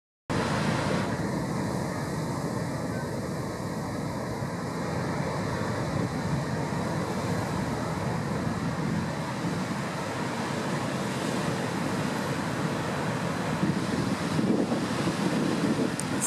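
Heavy storm surf breaking against rocks, a steady low rushing noise, with wind blowing across the microphone.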